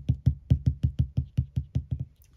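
A clear acrylic stamp block being pressed and tapped down by hand onto paper on a craft mat, making about a dozen quick, even knocks, roughly six a second.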